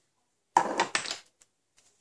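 A clear acrylic stamp block set down on the work surface: a sharp knock about half a second in, followed by a short clatter.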